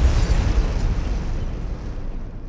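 Cinematic boom sound effect for an intro logo: a deep, rumbling impact with a hissing noisy tail that fades out slowly.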